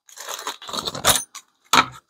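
Packaging being handled: irregular crinkly rustling and light clattering for about a second, then a sharp knock near the end.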